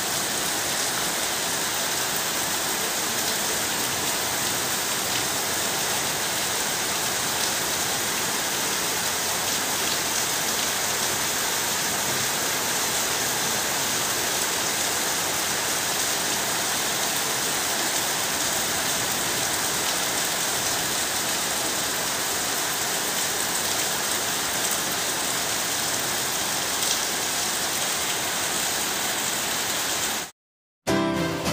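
Heavy rain pouring down steadily: a dense, even hiss of falling water that holds the same level throughout.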